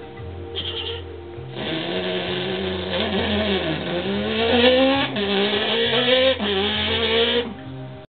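A man's vocal impression of a Honda VTEC engine revving: a buzzing, voiced drone that climbs in pitch, drops and climbs again several times like an engine going up through the gears, from about a second and a half in until near the end.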